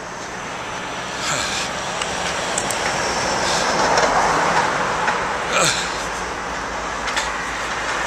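Road traffic going by: a vehicle's noise builds to a peak near the middle and then fades.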